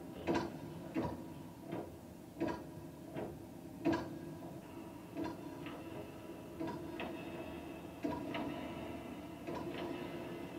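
Irregular sharp knocks or clicks, about one or two a second and uneven in strength, over a steady hum, heard from the soundtrack of a video artwork being screened.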